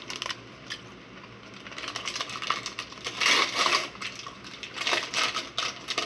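Paper food bag crinkling and rustling as it is handled, in a run of crackly bursts that gets busier from about two seconds in.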